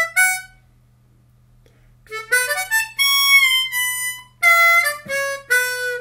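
Seydel 1847 Classic ten-hole diatonic harmonica in A, played slowly in third position (B minor), one clear single note at a time. A phrase ends just after the start, a pause of about a second and a half follows, then a run of notes starts again about two seconds in.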